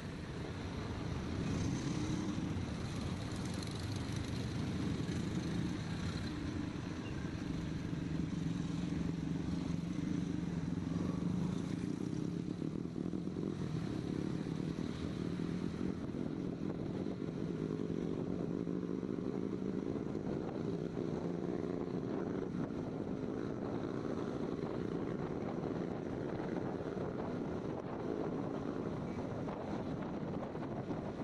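Honda scooter's single-cylinder engine running as the scooter pulls away from a stop and picks up speed, its note rising somewhat in the second half, with road and wind noise.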